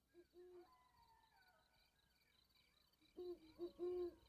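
Owl hooting softly: a single hoot near the start, then a quick run of three or four hoots in the last second.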